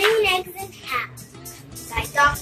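A young child's voice reading aloud in short bursts over steady background music.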